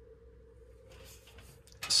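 Faint handling noise: light clicks and rattles from about a second in as the box fan and camera are moved, over a faint steady hum.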